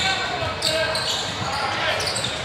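Basketball game sounds in a large gym: the ball bouncing on the hardwood floor, short sneaker squeaks, and voices of players and spectators, all echoing in the hall.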